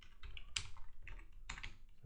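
Typing on a computer keyboard: a run of irregularly spaced keystroke clicks.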